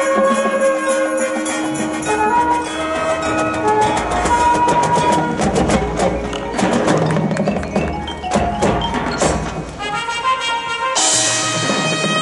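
High school marching band playing its show: held melodic notes for the first few seconds, then a stretch of rapid drum and percussion strokes from about four seconds in, and a loud full-band entry about a second before the end.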